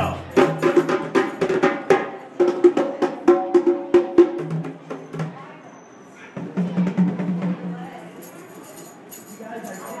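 Hand drums, djembes and congas, struck by hand in a quick rhythm for the first four seconds or so, then thinning out to scattered taps. A voice comes in past the middle.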